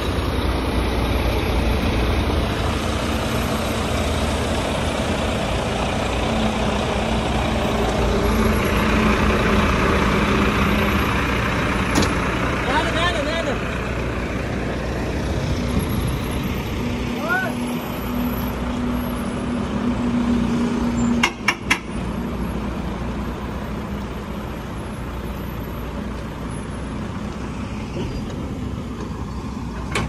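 Heavy truck's diesel engine running steadily at low revs, a continuous low rumble. A short cluster of sharp clicks comes about two thirds of the way in.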